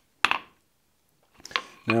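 A single hammer blow on the hot steel hook on the anvil about a quarter second in, a short metallic clink that rings briefly. A few faint clicks follow near the end.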